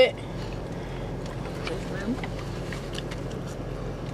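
Steady low hum inside a parked car's cabin, with a faint voice briefly about halfway through.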